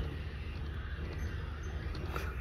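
A sliding glass door rolling smoothly along its track, a soft, steady sound with no squeak or bump, over a low outdoor rumble coming in through the open doorway.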